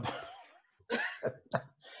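A person coughs once about a second in, followed by a brief second catch and a short breathy exhale near the end.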